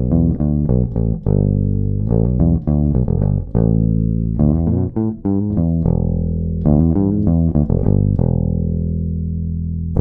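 1976 Rickenbacker 4000 single-pickup electric bass played with a pick, clean and direct into an audio interface with the tone control turned fully down and the volume at maximum: a bassline of quick picked notes broken by a few longer held notes, ending on a sustained note.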